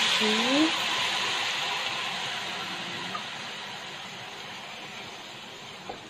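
Liquid sauce poured into a hot wok of noodles, sizzling with a steady hiss that is loudest at first and fades gradually over several seconds.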